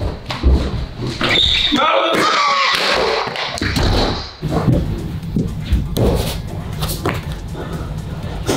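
A run of thumps and knocks with a person's wordless yelling, over background music.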